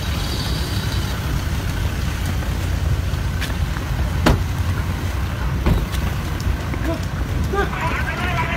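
Steady low rumble of idling pickup-truck engines, with a few sharp clicks in the middle.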